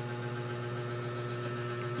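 Steady low electrical hum, with a few fainter steady higher tones above it.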